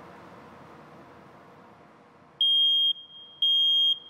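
Battery smoke alarm (First Alert) sounding in test mode while its test button is held down: after about two and a half seconds of quiet, two loud, high-pitched beeps, each about half a second long and about a second apart. The alarm going off shows that the unit is working.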